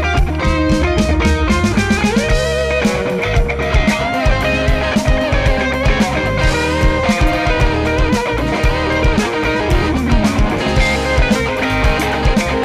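Live dream-pop band playing: two electric guitars ringing over electric bass and a steady drum-kit beat.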